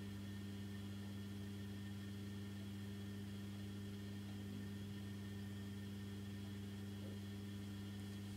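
A steady low electrical hum with a faint hiss underneath, unchanging throughout.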